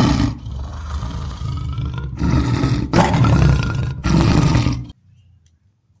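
Lion roaring: several loud, rough roars in a row that cut off abruptly about five seconds in.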